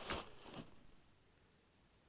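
Two short rustles of handling noise within the first second, then a faint room hush.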